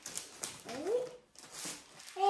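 Crinkling and rustling of a plastic-wrapped package being pulled out of a gift bag and lifted up, with a brief rising voice sound about half a second in.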